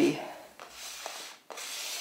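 A painting tool rubbed across paper in two strokes, the second louder and starting sharply about one and a half seconds in.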